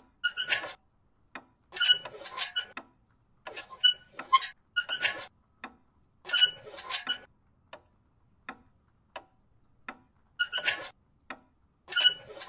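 Small clicks and ticks with a faint metallic ring, coming in irregular clusters with short silent gaps between them.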